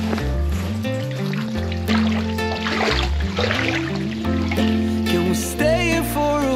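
Background music: a song with a steady bass line and held chords.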